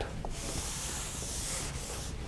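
Rubbing against a chalkboard: a steady, high hiss lasting about a second and a half.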